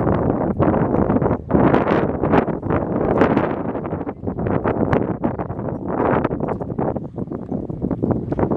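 Wind buffeting the microphone: a loud, uneven rush that surges and dips in gusts.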